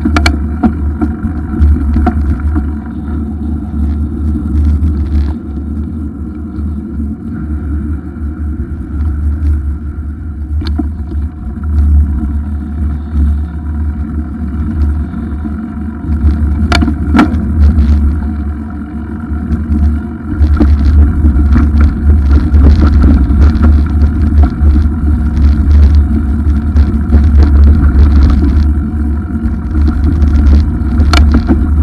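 Wind noise on the microphone of a camera riding on a moving bicycle, with scattered knocks and rattles. It gets louder about twenty seconds in.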